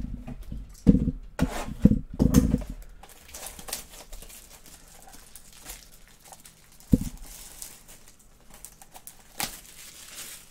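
Trading cards and a cardboard card box being handled on a tabletop: several dull thumps in the first three seconds as cards are set down, then faint rustling as the box is picked up and turned over, with another knock about seven seconds in.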